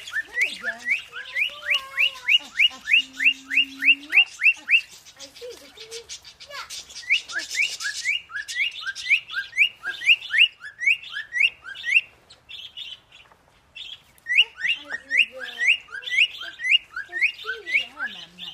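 A bird calling: runs of short, rising whistled chirps, about three a second, in three bursts separated by brief pauses.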